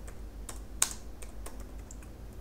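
Typing on a computer keyboard: a run of separate key presses, with one louder keystroke a little under a second in.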